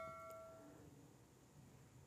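A bell-like chime fading away within the first second, then near silence.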